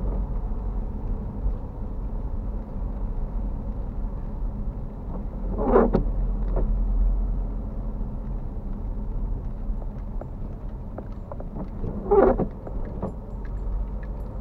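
Steady low rumble of a car driving on a wet road, heard from inside the cabin. Windscreen wipers on an intermittent setting make a short swish twice, about six seconds in and again about twelve seconds in.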